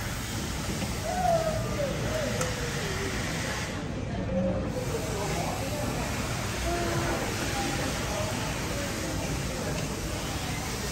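Airport terminal ambience: indistinct, distant voices over a steady background hum, with no clear individual sound standing out.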